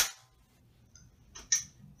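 A BB gun firing once, a single sharp crack right at the start as the pellet is shot into the apple. A few light clicks follow about a second and a half in.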